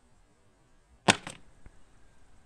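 A rubber slide sandal landing on a flat board with a sharp slap about a second in, followed at once by a second, smaller hit and a faint click.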